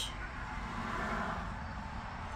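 Steady background noise with a low hum underneath; no distinct handling clicks or knocks stand out.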